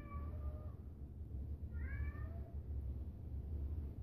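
A cat meowing twice, short calls about two seconds apart, over a low steady hum.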